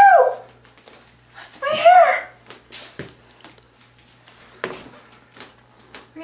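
A short, high-pitched vocal cry about two seconds in, rising and then falling, after another that trails off at the start. A few sharp clicks follow, over a faint steady low hum.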